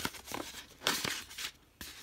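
Paper rustling and crinkling as a wooden ornament is slid into a handmade patterned paper envelope, in a couple of short bursts with a small click near the end.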